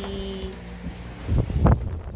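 Handling noise on a phone's microphone: low rumbling thumps and rubbing as the phone is moved about, loudest in a short burst in the second half.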